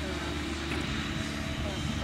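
A steady, low engine hum.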